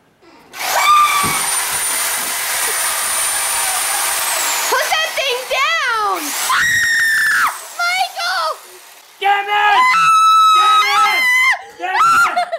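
Reciprocating saw running for about four seconds, with a steady high whine that falls away as the motor winds down. Screaming and shouting follow.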